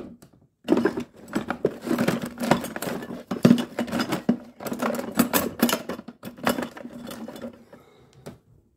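Hand tools clinking, knocking and rattling against each other in a wooden drawer as a hand rummages through them, a busy run of clatter that starts about a second in and dies away near the end.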